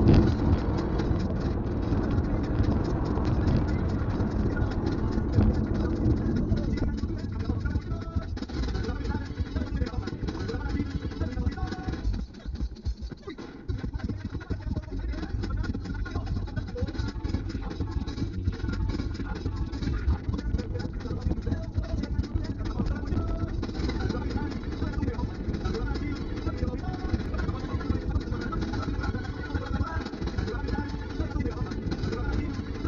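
Steady road and engine noise inside the cabin of a moving Kia Carens, heavy in the low end, dipping briefly about twelve seconds in.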